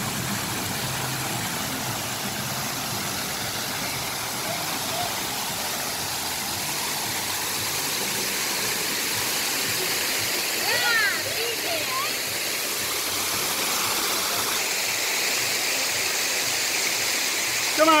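Steady rushing and splashing of an artificial waterfall pouring over faux-rock walls into a pond.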